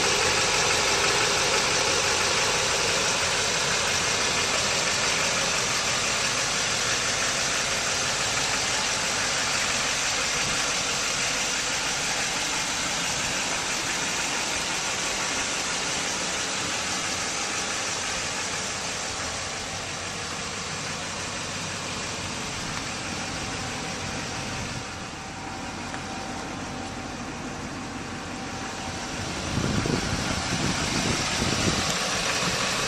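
Duramax 6.6-litre V8 turbodiesel of a 2008 GMC Sierra 2500HD idling steadily. It grows gradually quieter over the first twenty-odd seconds and louder again near the end.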